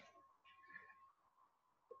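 Near silence: room tone with a faint steady high hum and a brief faint sound about three-quarters of a second in.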